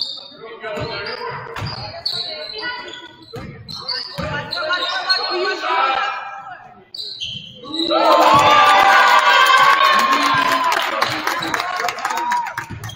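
A basketball being dribbled on a hardwood gym floor, with players and spectators shouting around it and echoing in the gym; the shouting grows louder and more continuous for the last few seconds.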